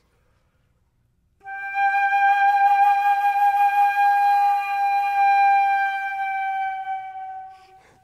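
Gold concert flute playing one long sustained note with vibrato, starting about a second and a half in and fading away near the end.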